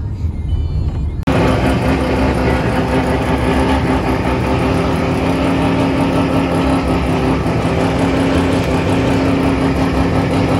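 Nissan S15 Silvia drift car's four-rotor rotary engine idling loudly and steadily. It comes in suddenly about a second in, after a low rumble of van cabin noise.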